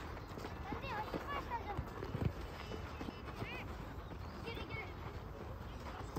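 Youth soccer match on a hard dirt pitch: children's shouts and calls across the field, with scattered thuds of running feet and the ball.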